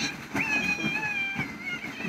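A child's high-pitched, cat-like held squeal, one long steady call lasting about a second and a half and dipping slightly in pitch near its end.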